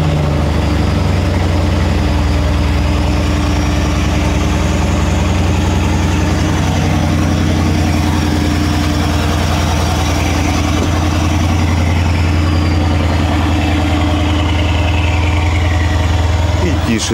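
Mercedes-AMG GLS 63's 5.5-litre twin-turbo V8 idling steadily and loudly just after a cold start, warming up on its fast idle.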